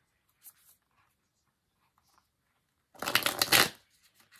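A deck of cards being shuffled in one quick burst of rapid flicking, about three seconds in. A few faint light card-handling ticks come before it.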